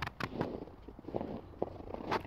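Footsteps crunching in snow: a string of irregular crackly crunches.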